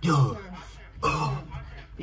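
A man's short, rough vocal grunts, about one a second, of the kind made while reacting to a song.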